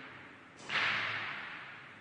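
A heavy exhale of breath close to a microphone: one sudden rush of air noise about half a second in, fading away over about a second.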